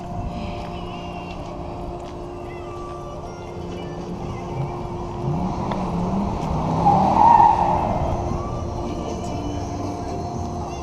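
A car engine revving up and down, its pitch rising and falling and loudest about seven seconds in, over a steady hum.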